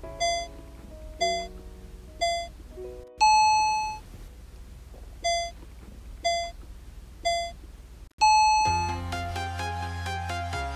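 Countdown timer beeps: three short beeps a second apart, then a longer, higher and louder beep, the pattern heard twice, marking the change to the next exercise. Near the end an electronic dance track with a steady beat starts.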